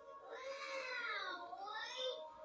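A cartoon voice slowed to quarter speed: one long, drawn-out cry that slides down in pitch, then rises again near the end, played from a screen's speaker.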